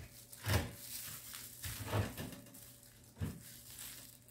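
Three soft knocks and scrapes, spaced more than a second apart, from a spoon working hot clay mud across a paper sheet.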